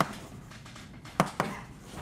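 Chalk writing on a blackboard: a few sharp taps and clacks as the chalk strikes the board, three of them close together in the second half.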